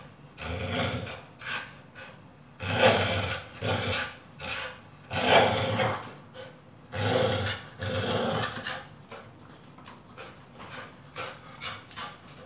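Pit bull growling in repeated bouts while tugging on a rubber tyre, each bout under a second, the loudest about three and five seconds in; the growls die down over the last few seconds.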